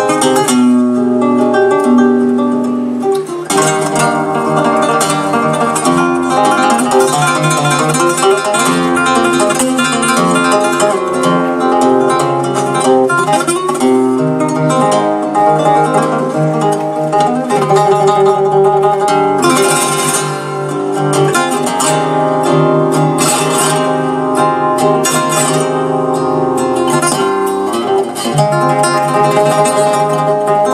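Solo flamenco guitar playing por tarantas, the introduction before the singer comes in: picked melodic runs and held notes, broken up in the second half by bursts of strummed chords (rasgueado).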